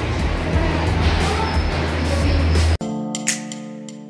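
Loud low rumbling background noise for nearly three seconds, then it cuts off abruptly and background music begins, with steady sustained notes and one sharp plucked accent.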